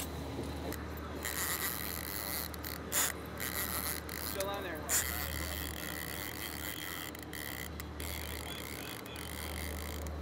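A fishing boat's engine running steadily as a low hum, with two short sharp clicks of gear being handled on deck, about three seconds in and again about two seconds later.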